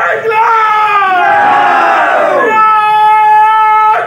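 Group of men shouting a political slogan together in long, drawn-out calls: two held calls, the first dropping in pitch at its end about halfway through.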